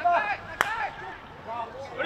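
A field hockey stick striking the ball with a single sharp crack about half a second in, among players' shouted calls on the pitch.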